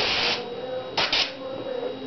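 Paasche Talon airbrush spraying with a steady hiss of air that cuts off about a third of a second in, followed by two short spurts of air about a second in as the trigger is worked.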